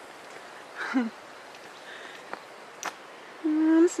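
Faint steady outdoor background hiss, broken by a short voice sound about a second in and a single sharp click near three seconds; a woman's voice starts near the end.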